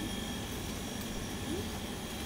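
Steady room tone of a small shop: an even hum and hiss with a thin, constant high-pitched whine.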